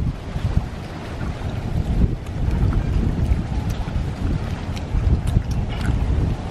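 Wind buffeting the microphone: an irregular, gusty low rumble, with a few faint clicks.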